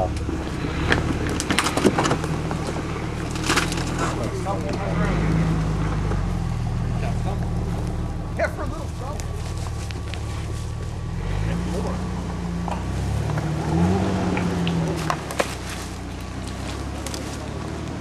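Jeep Wrangler TJ engine running at low revs while crawling up a rough trail, its note rising briefly about five seconds in and again around the middle. Scattered sharp cracks and knocks come from the tyres going over wood and rock.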